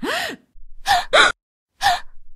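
A voice gasping at the start, rising and falling in pitch, then a few short breathy vocal sounds: a shocked reaction.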